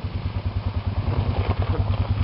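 ATV engine running at low speed, with an even, rhythmic putter that grows a little louder near the end as the quad comes out of the mud.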